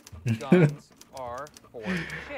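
Typewriter keys clacking in a rapid run of sharp clicks as someone types, with voices over it.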